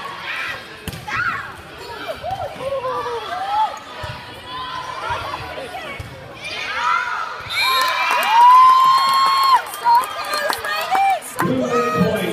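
Spectators and players shouting and cheering during a volleyball rally, with sharp ball hits in between. A long, high yell carries over the crowd from about two-thirds of the way in.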